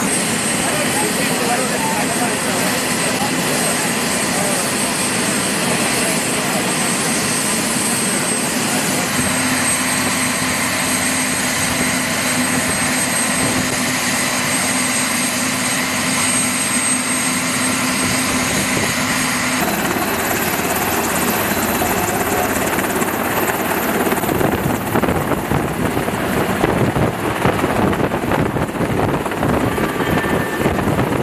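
Helicopter turbines and rotors running on a ship's flight deck, a loud steady noise with a thin high whine. After a change about twenty seconds in, a Sikorsky VH-60N presidential helicopter runs up, its rotor noise growing louder and choppier as it lifts off near the end.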